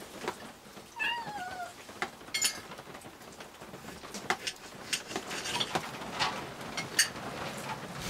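A Siamese-type cat meows once about a second in, a short call with a falling, wavering pitch, followed by a brief higher call. Light clicks and knocks come through now and then.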